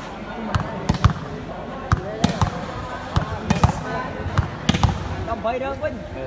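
A volleyball being struck and bounced: about a dozen sharp, irregular thuds over the hall's steady background of crowd chatter.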